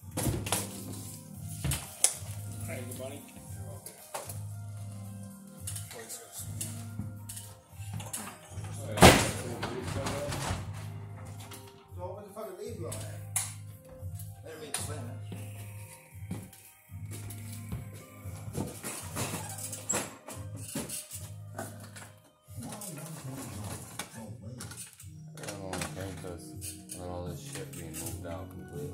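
Knocks and clatter from a drop-ceiling LED fixture and its parts being handled overhead, with one loud clunk about nine seconds in, over background music with a voice.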